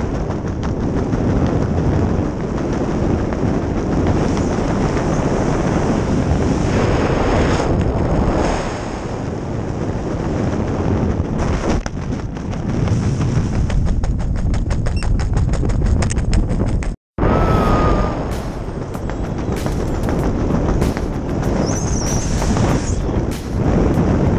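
Wind buffeting the camera's microphone during a parachute canopy flight: a loud, rough, crackling rumble with no let-up. It cuts out for a split second about two-thirds of the way through, then carries on.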